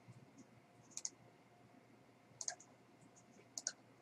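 Faint computer mouse clicks in three short clusters, roughly a second apart, against near silence.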